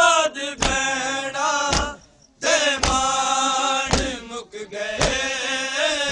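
A crowd of men chants the refrain of a Punjabi noha (mourning lament) in unison. Sharp chest-beating (matam) strikes keep the beat, about one a second. The chant breaks off briefly about two seconds in.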